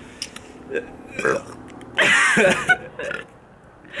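A person gagging and sputtering on a mouthful of dry pre-workout powder, with short throaty noises and one loud, strained vocal outburst about two seconds in.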